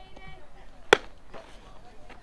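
A single sharp pop about a second in: a baseball pitch smacking into the catcher's leather mitt.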